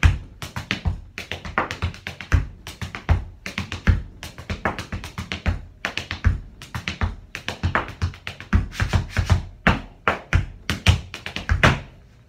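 Tap dancing: tap shoes striking a portable tap board in quick rhythmic runs of sharp taps, with heavier strikes among them, stopping at the very end.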